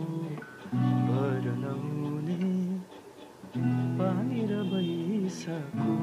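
Acoustic guitar with a capo on the second fret, strummed chords held in blocks of about two seconds with short breaks between them. A voice sings the melody softly over the chords.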